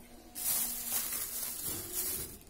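Thin plastic bag crinkling and rustling as hands pull it open, starting about a third of a second in.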